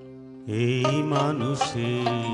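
A Bengali folk song ensemble of harmonium, tabla, keyboard and plucked lute playing the introduction. A held harmonium chord is joined about half a second in by a louder melody line whose pitch wavers and bends.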